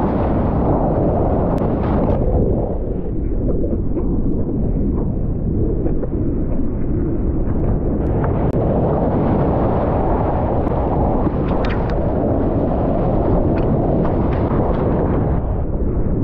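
Loud, steady rumble of rushing whitewater and wind buffeting an action camera's microphone as a surfer rides through a breaking wave, with a few faint sharp ticks.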